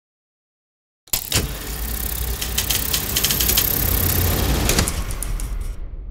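Logo sound effect for a film distributor's intro. It starts with a sudden hit about a second in, then swells into a rumbling, hissing sound with scattered clicks, and fades away near the end.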